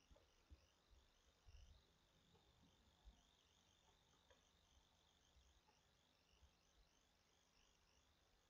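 Near silence: room tone with a faint, wavering high-pitched chirping throughout and a few soft low thumps, the strongest about a second and a half in and about three seconds in.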